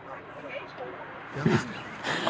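Low steady background noise with one short vocal sound from a person about one and a half seconds in.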